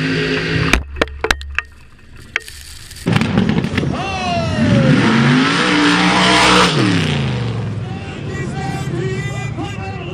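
Rail dragster engine running, then a sharp bang a little under a second in and a quick string of further pops over the next second: a backfire. From about three seconds a rail dragster engine revs hard on a pass, its pitch climbing and falling before it drops away near seven seconds.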